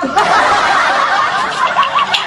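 Laughter: breathy snickering and chuckling that starts abruptly and carries on without words.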